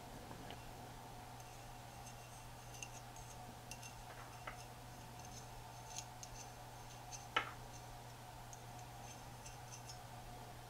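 Faint scattered clicks and scrapes of a small screwdriver tip against a VCR capstan motor's steel shaft and rotor as white lithium grease is worked onto the shaft, with one sharper click about seven seconds in. A low steady hum runs underneath.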